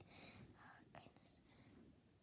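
A girl whispering faintly for about the first second, with a small click near the end of it, then near silence.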